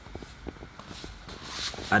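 Faint, scattered light clicks and handling rustle over a low background hiss.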